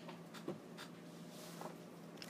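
Faint scratching of a pen on paper, a few light strokes spread across the pause, over a low steady hum.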